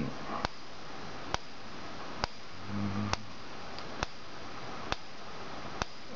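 Pulse coil of a homemade magnetic pulser giving a sharp click each time its photo-flash capacitor bank is discharged into it through an SCR, a regular click about every 0.9 s.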